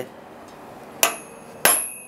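Hammer striking a steel punch held on a Chilean spur's steel rowel, stamping the maker's mark: two sharp metallic strikes a little over half a second apart, about a second in, each leaving a high ringing.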